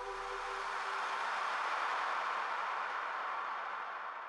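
A soft, even hiss of noise that swells slightly and then fades away, while the last held tones of the song die out in the first second.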